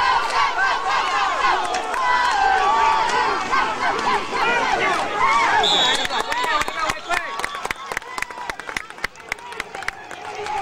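Football crowd and sideline players shouting and cheering together during a play, many voices over one another. The yelling eases off and grows quieter about six or seven seconds in, leaving scattered sharp clicks.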